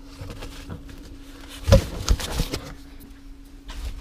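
Scattered rustles and soft knocks of newspaper bedding and handling as a reticulated python is lifted off her egg clutch, with a faint steady hum underneath; the strongest strokes come about halfway through.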